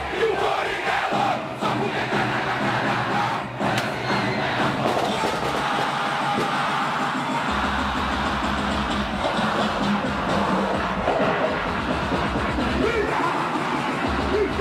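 A large live crowd yelling and chanting over Brazilian funk music from a stage sound system. A heavy bass comes in about halfway through and holds steady.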